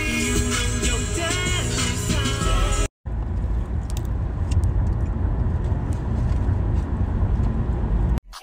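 A song with singing for about the first three seconds, cut off abruptly, then the steady low rumble of a car heard from inside the cabin.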